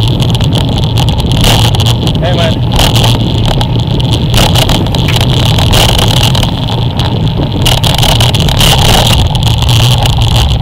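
Wind buffeting the microphone of a camera mounted on the front of a road bike moving at speed, a loud, steady rumble with irregular gusts.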